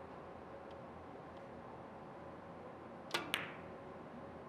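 Carom billiard balls clicking: two sharp clicks about a fifth of a second apart, the cue tip striking the cue ball and then the cue ball hitting another ball, the second with a brief ring. Quiet hall room tone underneath.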